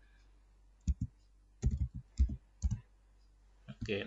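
A handful of short, sharp clicks from a laptop's keys and buttons, about six in all, spread unevenly across a few seconds with quiet gaps between them.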